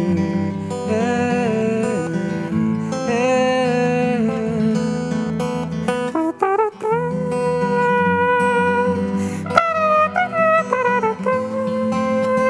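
Steel-string acoustic guitar playing chords under a wordless vocal melody of long held notes that slide between pitches and waver, with a short break about six seconds in.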